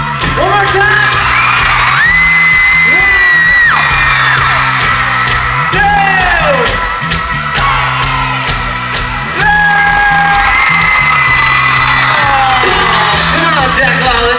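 A live pop-rock band playing loud through an arena sound system over a steady bass line, with high screaming from the audience. Two long high held notes start about two seconds and nine and a half seconds in.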